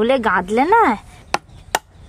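Two short, sharp snips about half a second apart as the gills of a large pangas catfish are cut against a boti, a fixed curved blade, in the second half. Before them, a rising and falling voice-like call.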